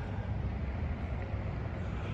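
Steady low outdoor rumble with a faint even hiss over it, and no distinct event.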